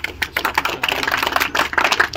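A small audience applauding: a dense, steady patter of hand claps.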